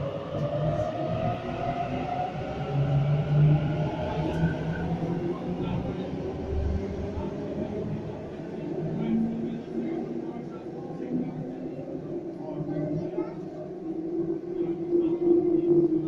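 A Sydney Trains Waratah double-deck electric train departs an underground platform, its traction motors whining and rising in pitch as it accelerates away into the tunnel. The wheels rumble beneath the whine, and the sound echoes off the station's tunnel walls.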